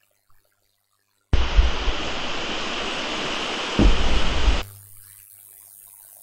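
A steady, static-like hiss starts suddenly about a second in. It runs for about three seconds with a low rumble near its end, then cuts off abruptly, leaving only a faint low hum.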